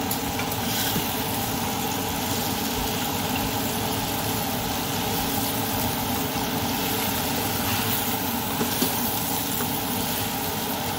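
Flour-coated beef cubes sizzling steadily in oil in an Instant Pot on the sauté setting, over a steady mechanical hum.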